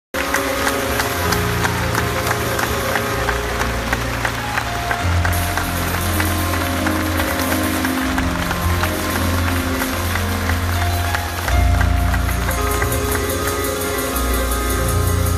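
Live jazz quartet playing an instrumental opening, with deep double bass notes moving under piano and the audience clapping. A louder low bass note comes in near the end.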